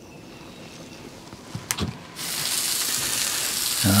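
Smoked sausage links and pork patties sizzling on a hot Blackstone tabletop griddle, a steady hiss that starts suddenly about halfway through. Before it, low quiet with a couple of light clicks.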